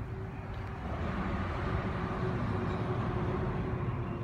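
Road traffic: a steady rush of tyres and engines, growing a little louder after the first second.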